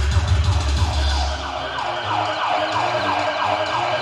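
Dance music played over a sound system. The heavy bass beat drops out about a second and a half in, and a siren-like effect of quick falling glides, about three a second, takes over.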